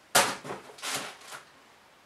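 Cardboard box and packing rustling and scraping as a bench power supply is lifted out of its box. There is a sudden scrape just after the start, then two softer rustles about a second in, and it is quiet in the second half.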